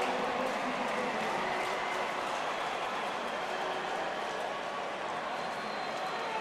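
Steady din of a large football stadium crowd, an even wash of many voices with no single sound standing out.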